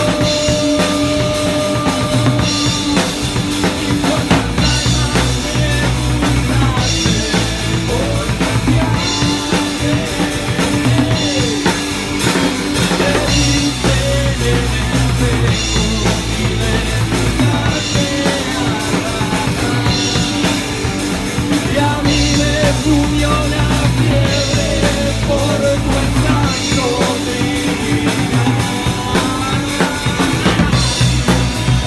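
Rock band playing live in rehearsal: electric guitars over a drum kit with a steady bass drum, and a singer on a handheld microphone, in a groove that repeats about every two seconds.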